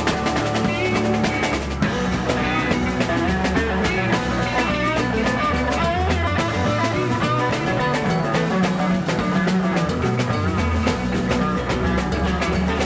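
Live psychedelic rock band playing an instrumental jam in 11/8 time: electric guitar lines moving over bass and busy drum kit, with no singing.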